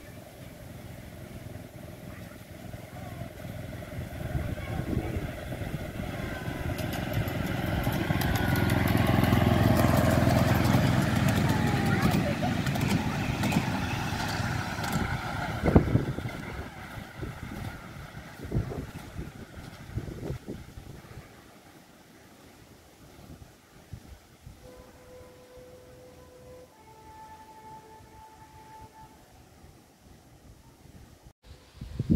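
A 7¼-inch gauge miniature railway train with passengers approaching, passing close by and running away round a curve. It grows steadily louder to a peak about ten seconds in, gives a sharp clack about sixteen seconds in as it goes past, and fades out by about twenty-one seconds.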